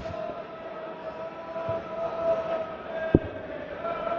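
Darts-arena background with a steady, held droning note over a low hall murmur, and one sharp knock a little after three seconds in.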